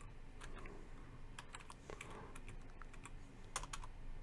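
Computer keyboard typing: faint, irregular key clicks as a short string of characters is entered.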